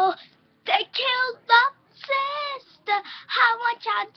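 A young girl singing unaccompanied: short sung syllables and a few held notes, with brief silent gaps between phrases.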